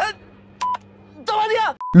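Mobile phone keypad beeps as buttons are pressed: two short beeps just over half a second in and another near the end, between brief snatches of film dialogue.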